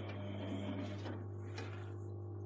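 Electrolux Time Manager front-loading washing machine running: a steady low motor hum under the swish of clothes tumbling in the drum, which fades about a second in, with a couple of brief clicks.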